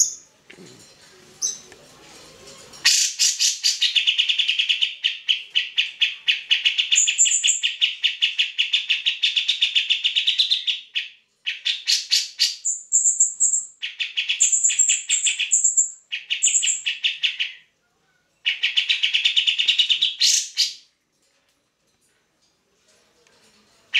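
Cucak jenggot (grey-cheeked bulbul) singing vigorously: long runs of fast, rapidly repeated notes, broken by a few higher whistled notes. The song starts about three seconds in and comes in three bursts with short pauses between them.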